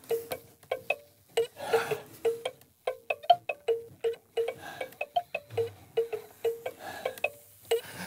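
A tinkling music-box tune of short plucked, ringing notes, about three a second, played as a hand crank on a prop box is turned.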